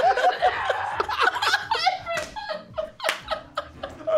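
Two men laughing hard: quick repeated bursts of laughter at first, then breathier gasping laughs that fade towards the end.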